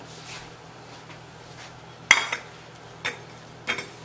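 Ceramic plates clinking together three times as a plate of toast is set down on a stack of plates, the first clink the loudest.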